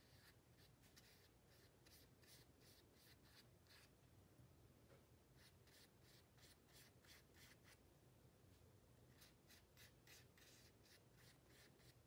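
Faint, quick strokes of a small paintbrush brushing watercolour over oil pastel on paper, about three or four strokes a second in short runs with brief pauses, over a low steady hum.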